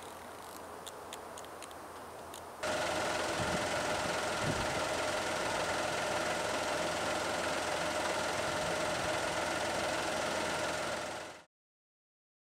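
Vehicle engine idling close by, a steady hum with a constant whine, cutting in suddenly about two and a half seconds in after a quieter stretch with faint ticks, and fading out shortly before the end.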